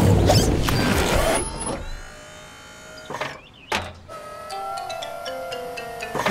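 Cartoon sound effects over background music as a fire engine's bucket arm moves. A loud rushing burst fills about the first second and a half, then a quieter steady electric whirr follows, with two short knocks around three and four seconds in.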